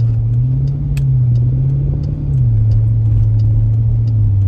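Jeep Grand Cherokee SRT's 6.4-litre HEMI V8 heard from inside the cabin under acceleration, a deep, loud, steady drone that drops a little in pitch about two and a half seconds in.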